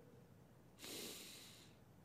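A man's single sniffing breath drawn in through the nose, about a second long and fairly faint.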